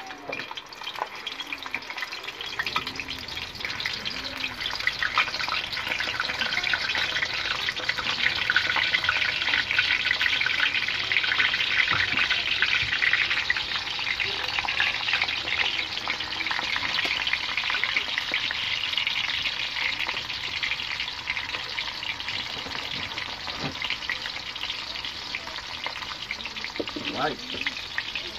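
Hot dogs sizzling in hot oil in an aluminium wok. The sizzle builds over the first several seconds as more hot dogs go into the oil, then holds steady.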